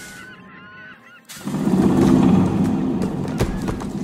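Diaphone foghorn sounding one loud, low blast that starts about a second and a half in, after a brief quiet with faint high chirping calls. Near the end a run of sharp cracks and knocks sets in.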